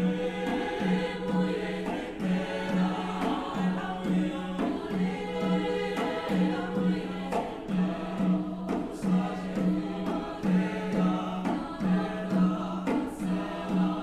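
Choral music: a choir singing over a low note that pulses in a steady, repeating rhythm.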